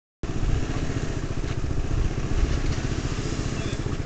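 Small motor scooter engines running, a continuous low rumble.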